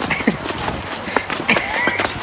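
Footsteps of several people walking on a dirt trail: irregular, light steps, with faint voices in the background.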